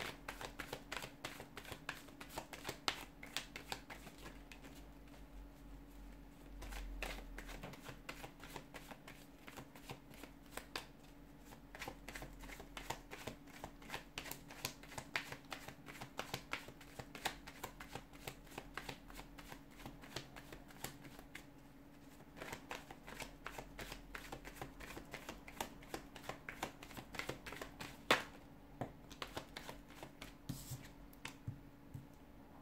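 A tarot deck being shuffled by hand: a long, continuous run of quick papery card clicks, with one louder snap about two seconds before the end.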